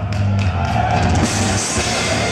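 Gothic metal band playing live at full volume: heavy distorted guitars and bass over a drum kit with crashing cymbals, heard from the audience in the hall.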